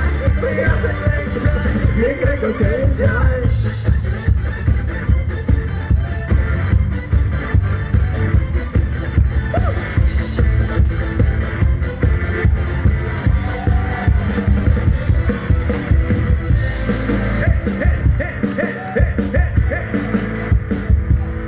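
Live band playing a loud up-tempo dance number from a party medley, with a steady beat and heavy bass.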